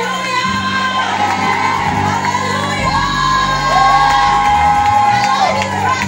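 Live church praise music: a band with electric bass and keyboard under many voices singing long held notes, with the congregation cheering and shouting along.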